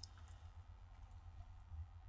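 Near silence: room tone with a steady low hum and one faint click at the very start.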